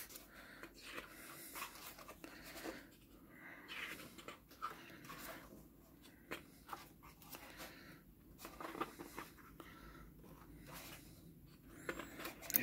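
Faint rustling and soft sliding of thick, sturdy photobook pages being handled and turned by hand, with a few light paper clicks scattered throughout.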